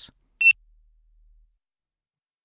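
A single short electronic beep, one steady high tone, from the sailing app's start countdown as it reaches thirty seconds to the start.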